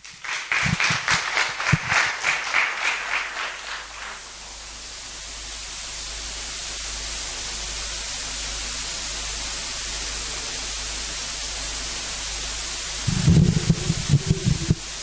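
Audience clapping for about four seconds, then a steady hiss that slowly grows louder. A man's voice starts near the end.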